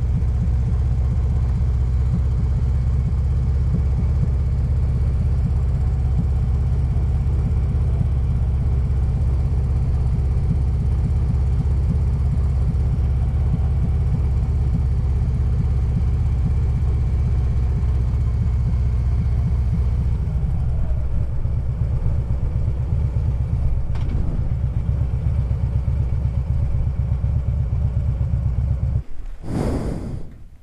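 Harley-Davidson Road Glide's V-twin engine running steadily under way with a low rumble. About two-thirds of the way in it eases off to a slower, more uneven beat as the bike slows, and the engine cuts out just before the end.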